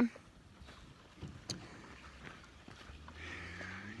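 A quiet cattle yard with a few faint brief knocks, then a cow starts a low, drawn-out moo about three seconds in.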